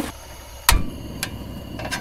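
Metal cookware on a portable propane camp stove: one sharp metallic click, then two lighter clicks as a frying pan is set onto the burner, over a low steady rush.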